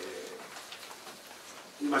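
A man's long, level hesitation sound "eeh" fades out about half a second in. Quiet room tone follows before his speech resumes near the end.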